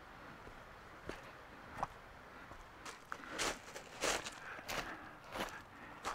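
Footsteps crunching over loose pebbles on a shingle beach. A few faint clicks in the first half give way to steady crunching steps about every two-thirds of a second.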